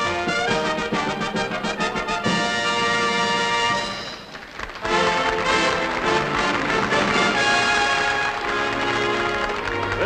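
Orchestra music led by brass, in two loud phrases with a brief drop about four seconds in between them.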